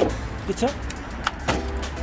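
Sharp knocks from a WLtoys 104009 RC truck striking a plastic pallet: one at the start, then two close together near the end, the last the loudest.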